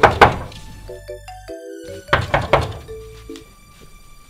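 Knocking on a wooden door: two sharp knocks at the start, then three more about two seconds in, over background music.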